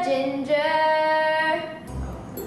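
A girl singing alone: a short note, then one long held note that stops shortly before the end.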